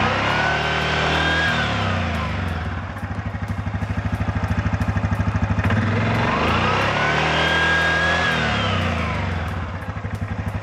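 Yamaha Grizzly 700's single-cylinder engine revved twice and idling in between, with the CVT cover off. Each rev brings a whine from the exposed primary and secondary clutches and drive belt that rises and then falls. The engine runs up a first time about a second in and a second time after about six seconds, settling back to a pulsing idle each time. This is a test run of the freshly cleaned primary clutch to check that the clutches engage and move smoothly.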